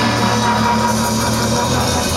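Surf rock band playing live through the stage PA: electric guitars, bass guitar and drum kit.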